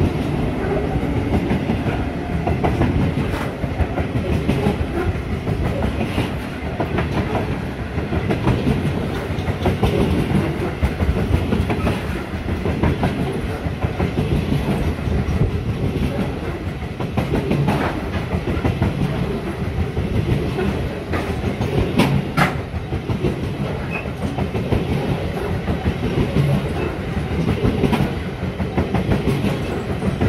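Freight train of covered hopper wagons rolling past close by: a steady rumble of steel wheels with a repeating rise and fall as the bogies cross the rail joints, and a couple of sharp clanks about two-thirds of the way through.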